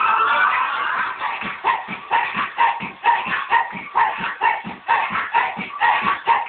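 Dance music for children, with singing at first. Then comes a run of short dog-like barks, about two a second, in time with the beat.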